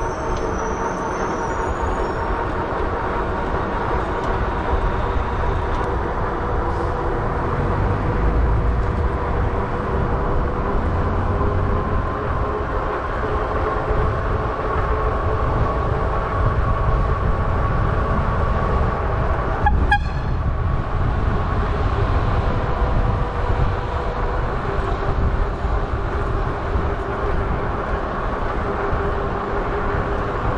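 Lectric XP e-bike's hub motor whining steadily while riding, its pitch drifting slightly with speed, over low wind rumble on the microphone. A single sharp knock comes about twenty seconds in.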